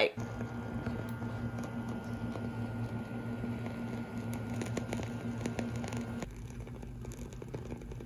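Wooden candle wick burning with a slight crackle: sparse, faint ticks over a steady background hum. About six seconds in, the hum's higher tone drops out.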